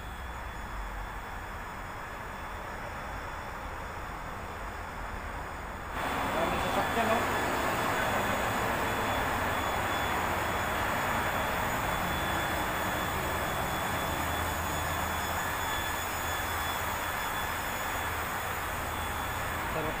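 Steady road traffic noise from a busy multi-lane highway, a continuous hiss of passing cars. It jumps abruptly louder about six seconds in.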